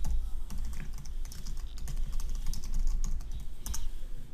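Computer keyboard typing: a quick, irregular run of key clicks as a terminal command is entered.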